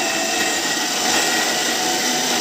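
Bosch mixer grinder running steadily, its motor spinning the blades in a stainless-steel jar.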